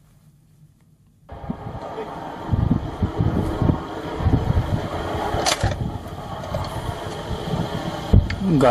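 Rough outdoor field audio that cuts in suddenly about a second in: a rushing noise with repeated low rumbling buffets, like wind on the microphone, and a short hiss near the middle.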